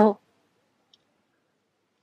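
A man's word trailing off, then a pause of near silence with one faint click about a second in.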